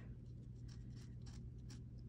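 Faint scratching strokes of a Sharpie felt-tip marker writing on paper.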